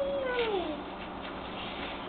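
A long, drawn-out call that holds its pitch and then slides down, ending under a second in.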